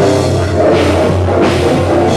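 A live rock band playing loud: a dense, steady wall of guitar and bass under a drum kit, with cymbal crashes washing in every second and a half or so.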